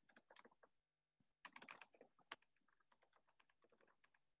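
Faint computer keyboard typing: quick runs of keystrokes in the first half, sparser taps toward the end.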